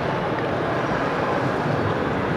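Steady background noise of a busy exhibition hall, with no distinct event standing out.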